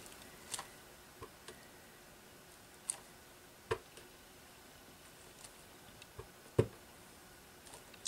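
A few light, separate knocks and taps of a clear acrylic stamp block being set down and pressed onto paper, the loudest about four and about six and a half seconds in.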